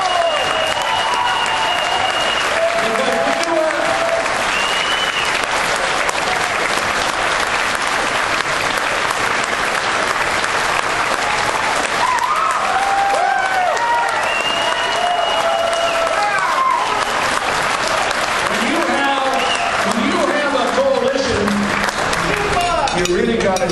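Audience applauding steadily, with scattered voices calling out over the clapping.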